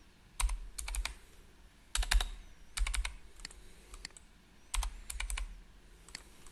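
Keystrokes on a computer keyboard in about five quick groups of a few clicks each, with short pauses between, as numbers are typed into input fields.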